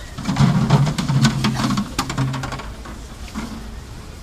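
Hollow plastic containers knocking and clattering as they are handled and stacked, a quick run of sharp knocks over a low steady tone, busiest in the first two and a half seconds and then dying away.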